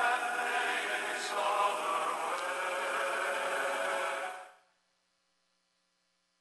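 Slow chanting voices holding long notes, like a dirge, fading out about four and a half seconds in to dead silence.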